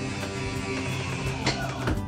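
Background rock music with guitar and drums playing steadily.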